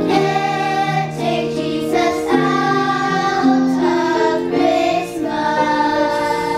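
Children's choir singing, held notes moving from one pitch to the next every half second or so.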